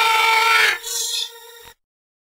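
The closing sound of an electronic bass music track: a held synth tone with hiss over it. It drops in level twice and cuts off abruptly into silence just before the end.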